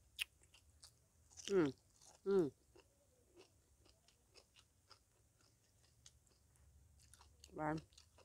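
A person chewing crunchy food close to the microphone, many small crunching clicks throughout. Two short, falling appreciative "mmm" hums about a second and a half in, and another near the end.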